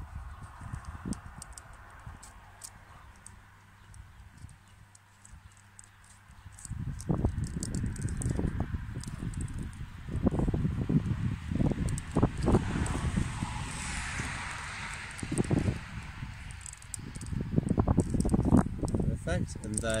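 Dry birch bark strips crackling and rustling as they are threaded and woven by hand. From about a third of the way in, irregular low buffeting joins it and becomes the loudest sound.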